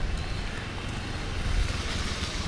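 Outdoor roadside background noise: a steady low rumble with a hiss over it, like traffic going by.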